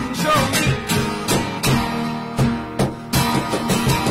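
Acoustic guitar strummed as part of a song, with a steady percussive beat of about three to four hits a second under the chords.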